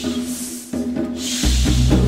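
Live band and orchestra music with drums, cymbal washes and sustained notes; a heavy bass line comes in about one and a half seconds in.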